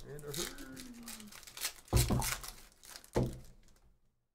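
Foil trading-card pack wrapper being torn open and crinkled, with a loud rip about two seconds in and a second, shorter one a second later.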